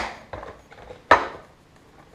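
Plastic margarine tub knocking and scraping against its plastic holder as it is lifted out: two sharp knocks about a second apart, with small clicks between.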